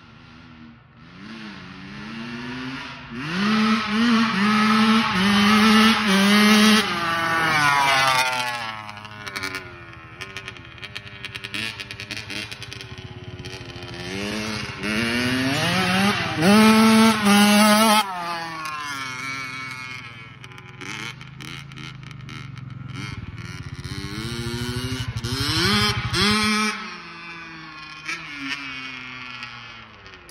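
Honda CR85R two-stroke dirt bike being ridden hard. The engine revs up in steps through the gears, then drops off. It grows loud three times as the bike passes close, about four to eight seconds in, around sixteen to eighteen seconds and near twenty-five seconds, and is quieter as it rides away between.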